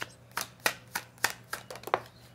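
Tarot deck being shuffled by hand: a series of about eight crisp card slaps, roughly three a second.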